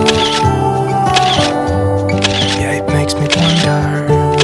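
Background music: the backing of a slow song between sung lines, with held chords and a steady beat about every second and a third.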